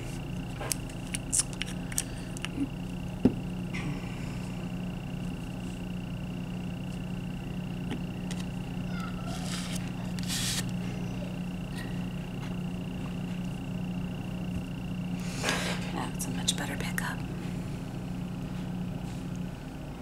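Short scrapes and light clicks of nail-stamping tools on a steel stamping plate, with two clusters about ten and sixteen seconds in, over a steady low hum with a thin high tone.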